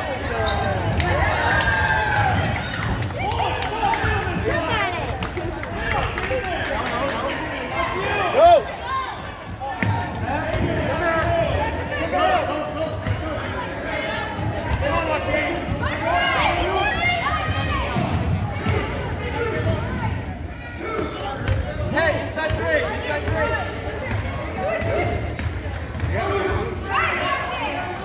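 A basketball dribbling and bouncing on a hardwood gym floor during a game, with players' and spectators' voices and shouts throughout, echoing in a large gymnasium. One louder moment comes about eight seconds in.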